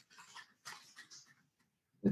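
Near silence, with a few faint brief sounds in the first second or so.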